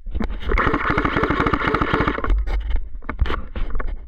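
Airsoft rifle firing a full-auto burst of about two seconds, a fast even rattle. It is followed by scattered clicks and scraping as the gun is shifted.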